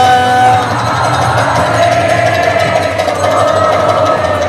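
Crowd singing together: a single voice holds a note briefly, then many voices join in a loud, blurred group chant over a steady low drone.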